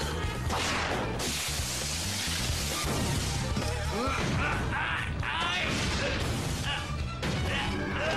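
Cartoon battle soundtrack: background music under a loud crash and a long noisy rush in the first few seconds, then a string of short sliding, rising and falling sounds.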